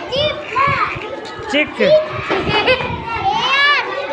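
Young children's voices calling out words, high-pitched with rising-and-falling pitch, with other children's voices in the background.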